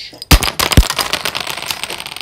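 A stack of small plastic toy logs collapsing onto a tabletop: two sharp knocks in the first second, then a dense, rapid clatter of many small pieces tumbling and settling, fading near the end.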